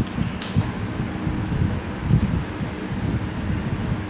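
Uneven low rumbling noise, like moving air on the microphone, with a few faint clicks in the first second as a cloth tape measure is handled.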